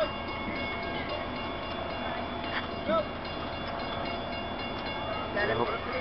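Steady whine of a stopped Amtrak passenger train standing at the platform, several even tones held without change, with brief voices of people nearby.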